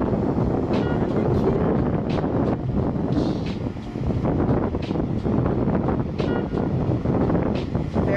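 Wind buffeting the microphone, a steady loud rush weighted to the low end, with a few faint short pitched sounds high above it now and then.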